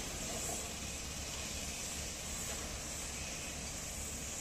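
Steady, low-level outdoor background noise: a constant hiss with an unsteady low rumble beneath it.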